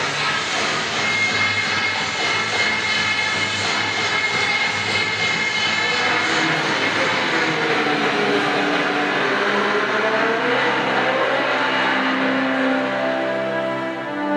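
Racing car engine sound effects from the projection show's soundtrack, played over loudspeakers in a large hall: high revs at first, then the pitch falls away after about six seconds, and music comes in near the end.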